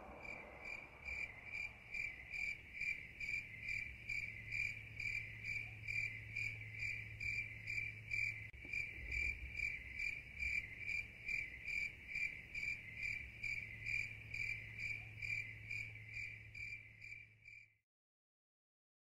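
A cricket chirping steadily in the night, one high note repeated evenly about two to three times a second, cutting off just before the end.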